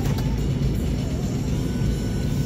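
Steady low rumble inside a vehicle's cabin, with music playing along with it.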